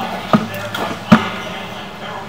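Two dull knocks about a second apart over a faint background hum, as a sewer inspection camera's push rod is fed down a grease line.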